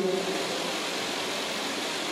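A steady hiss of background noise, even and unchanging, with no speech.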